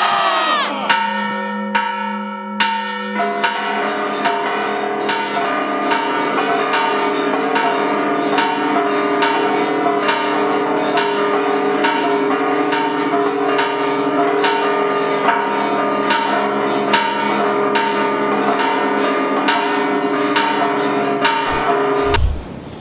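Bells pealing in quick, evenly repeated strokes with several tones ringing together: the Campana de Dolores rung from the National Palace balcony and the Metropolitan Cathedral's bells, the customary peal that closes the Grito de Independencia. The last crowd shouts die away in the first second, and from about three seconds in the peal grows fuller and runs on steadily.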